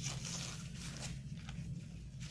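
Faint rustling of a sheet of paper being handled, over a steady low room hum.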